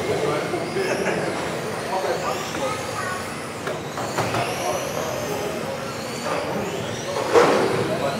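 Several 1:10 RC touring cars racing, their electric motors whining high and rising and falling in pitch as they speed up and slow down, over voices echoing in the hall. A sharp knock comes about seven seconds in.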